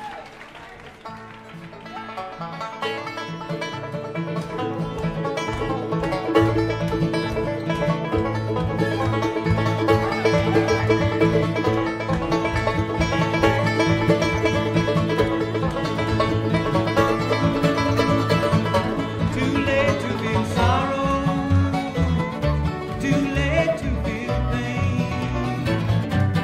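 Bluegrass music: an acoustic string band led by banjo and guitar playing, fading in over the first few seconds and then holding steady.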